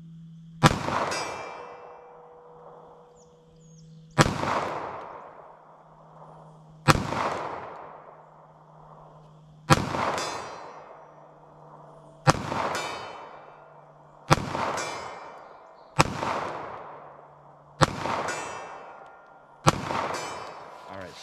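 Nine shots from a Smith & Wesson M&P Shield EZ pistol firing .380 ACP Speer Gold Dot rounds. They are a few seconds apart at first and come quicker toward the end, and each trails off in a long echo.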